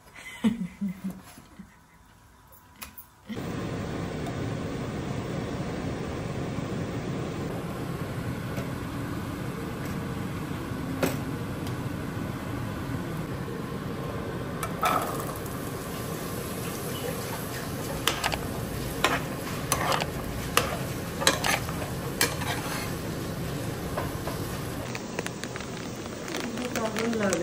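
A knife clicks against a plastic chopping board a few times as meat is sliced. Then diced carrot and celery sizzle steadily as they fry in a wok, with scattered clinks and scrapes of a utensil against the pan.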